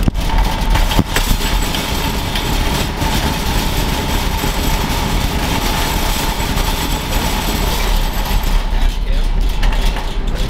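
Metal shopping cart rolling over parking-lot asphalt: a steady clattering rattle from the small wheels and the shaking wire basket, heard from inside the basket.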